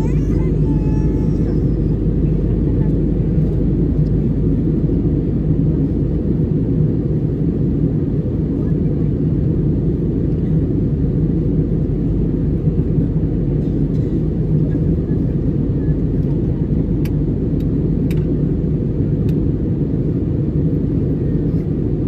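Steady low rumble of an airliner cabin in cruise flight, jet engine and airflow noise heard from a window seat over the wing. A few faint ticks come near the end.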